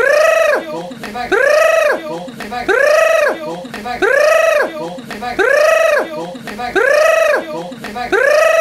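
A person's high-pitched vocal cry that rises and then falls in pitch, repeated six times at an even pace of about one every 1.3 seconds, each repeat identical as in a loop.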